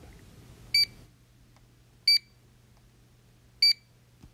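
Barcode scanner beeping three times, short high beeps about a second and a half apart, each one an item being scanned.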